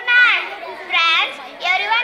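Group of children singing a numbers song in unison, in three short phrases with brief gaps between them.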